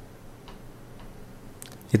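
A few faint, sparse clicks over low room hiss.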